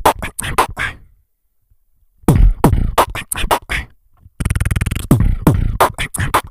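Beatboxing into a cupped handheld microphone: deep drum-like beats mixed with sharp clicks, broken by a silence of about a second near the start. Past the middle comes a fast buzzing roll lasting about a second, then more beats.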